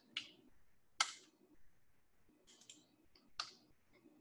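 A handful of faint, scattered clicks and taps from a computer keyboard and mouse, the sharpest about a second in.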